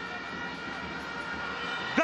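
Steady crowd and stadium ambience at a football match, with a thin steady tone held under it.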